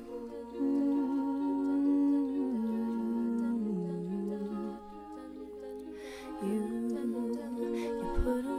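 All-female a cappella group singing wordless sustained chords in the song's introduction, a melody line stepping down in pitch beneath the held notes. It swells about half a second in and eases off around the middle before building again.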